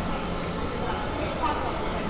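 Steady wind noise on the microphone, with a metal fork clinking against a plate twice, about half a second and a second in, as it cuts into a pastry.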